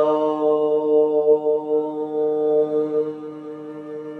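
A woman chanting a long Om on one steady note. The open vowel closes into a hummed 'mm', which softens about three seconds in.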